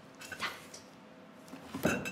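Cardboard box flaps being handled: a brief scrape about half a second in, then a louder, sharp knock of the lid flap near the end.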